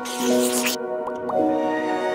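Soft background music of sustained held notes. It opens with a brief hissing swoosh lasting under a second, and two short rising blips follow about a second in.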